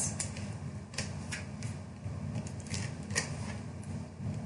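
Faint handling of cardstock while an adhesive tape runner is used on it: a few separate light clicks over a soft paper rustle.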